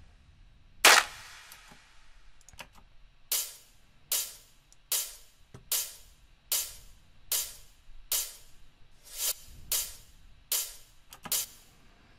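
Sampled electronic drums playing back from a production session: one loud hit with a long fading tail about a second in, then sharp clap samples on a steady beat, roughly one every 0.8 seconds, with a quicker pair of hits near the end.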